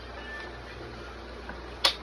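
A single sharp plastic click near the end, from the push-button latch on the handle of a child's foldable stroller bike being pressed, over a low steady room hum.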